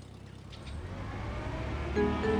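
Car engine sound effect as a car drives off: a low engine rumble that starts about half a second in and grows steadily louder.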